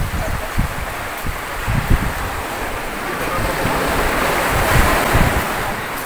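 Wind buffeting the microphone, with gusty low rumbles over a steady rushing noise that swells about four seconds in.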